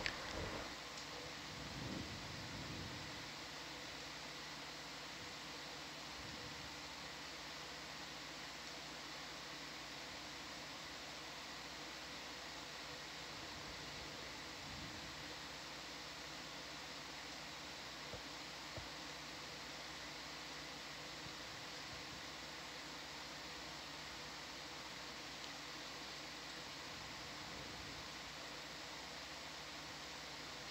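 Steady low hiss with a faint electrical hum from the ship's open commentary audio line, with a little low rumble in the first few seconds.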